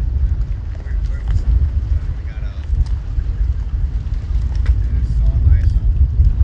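Wind buffeting the microphone, a loud, uneven low rumble, because the mic was turned the wrong way into the wind.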